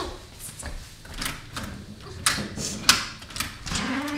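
Clicks and knocks of an interior door being handled, the knob turned and the latch worked, about seven sharp taps spread over the few seconds. A short rising whine comes in near the end.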